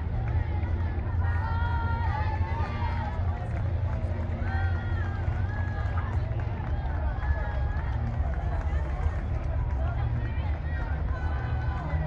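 Steady low engine rumble from a slowly passing illuminated carnival float, with crowd voices chattering over it.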